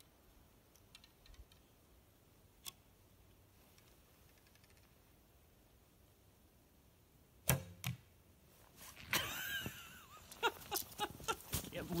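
Wooden recurve bow shot two-thirds of the way in: a sharp snap of the string on release, then a second knock about a third of a second later as the arrow hits the pumpkin and passes right through. The shot follows a near-silent stretch of drawing and aiming, and an excited voice and some handling rustles come after it.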